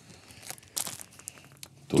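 A vinyl LP record sleeve being lifted and handled: a few short rustles and crinkles about half a second to a second in, then fainter ones.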